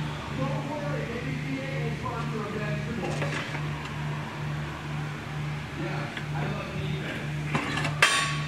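Large stainless butterfly valve worked by its friction-lock hand lever, the disc swinging open and shut with faint mechanical handling sounds and a short metallic knock near the end as it closes. Beneath it runs a low hum that pulses about twice a second.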